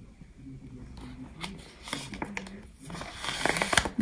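Clear plastic file pockets crinkling and clicking as a file section is handled and slid into the clear book's rail. A child's voice is faint in the background.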